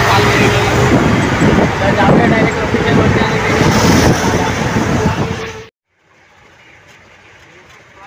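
Loud vehicle noise with a man's voice over it. It cuts off suddenly a little over two-thirds of the way through, leaving only faint low background.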